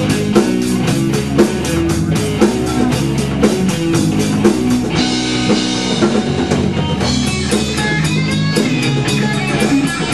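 Live rock band playing, with electric guitars, bass guitar and drum kit. Fast, even cymbal strokes carry the first half, then the cymbals drop back about halfway through.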